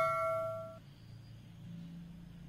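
A bell-like ding, struck just before, ringing out and fading away within the first second.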